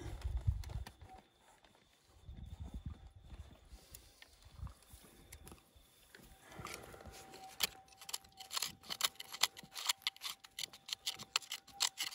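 Small hand pick knocking and scraping on bedrock in a rock crevice. It makes rapid, irregular sharp clicks and knocks that start a little past halfway, with a few dull thumps at the very start.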